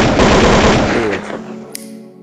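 Rapid burst of machine-gun fire, a sound effect in a hip-hop track, lasting a little over a second over the beat's sustained tones. A short bright swish comes near the end.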